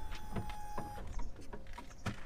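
Light clicks and rustling as a person climbs into a car's leather driver's seat, with a steady high tone that cuts off about a second in.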